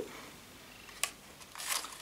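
A faint, short sniff as a person smells a scented wax melt up close, after a small click about a second in.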